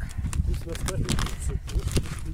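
A plastic bait-attractant packet crinkling and crackling in quick, irregular bursts as it is handled and pulled open.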